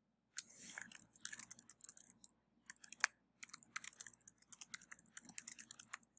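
Typing on a computer keyboard: a quick, uneven run of soft keystroke clicks, starting about half a second in and going on almost to the end, as a line of text is typed out.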